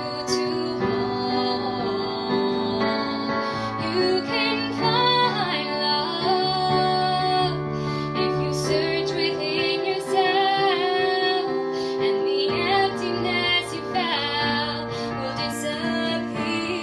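A woman singing, accompanying herself on a digital keyboard that plays held chords beneath her voice.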